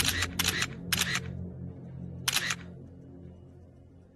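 Sharp clicks, mostly in quick pairs, several in the first second and another pair about two and a half seconds in, over a low music drone that fades away.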